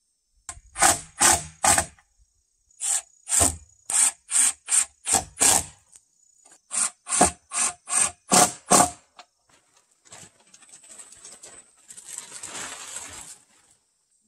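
Hand work on pine boards: a run of short rasping strokes of a tool on wood, about two to three a second in three bursts, like hand sawing. Then a softer, continuous rustling scrape near the end.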